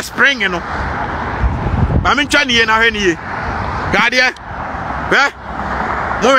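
A man's voice in short outbursts over a steady low rumble of car and road noise.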